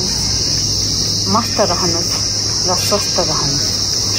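A loud, steady, high-pitched insect chorus that does not let up, over a low steady hum. A woman's voice speaks briefly twice over it.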